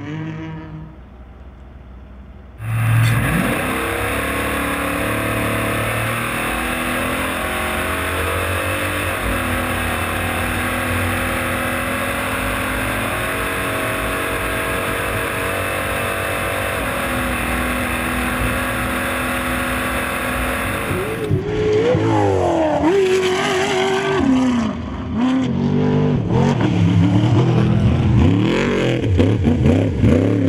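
Off-road race truck engines. From about 3 s in, a steady engine drone with road and wind noise is heard from inside the cab. From about 21 s, the engine revs up and down over and over as a trophy truck is driven hard over dirt.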